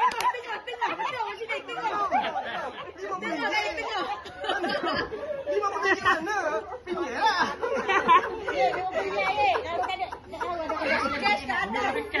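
Several people talking over one another in a group, a steady mix of overlapping voices.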